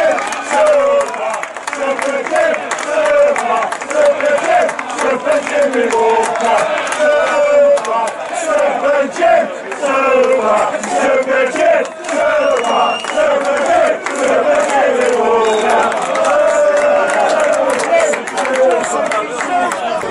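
A crowd of football spectators calling and shouting, many voices overlapping.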